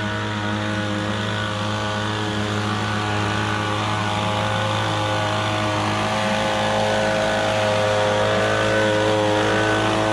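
Echo handheld two-stroke gas leaf blower running steadily with an air rush from the tube, getting a little louder near the end as it comes closer.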